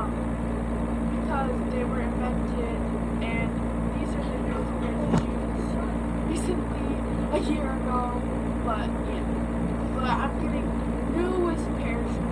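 A girl's voice speaking in short, indistinct snatches over a steady low hum.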